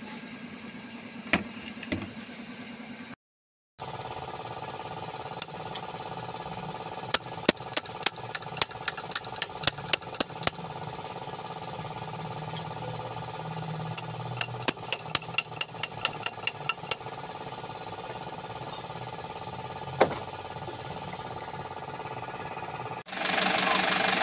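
Metal-on-metal tapping, an adjustable wrench striking a screwdriver, in two runs of quick strikes a few per second, with a few single taps between. A steady low machine hum runs underneath.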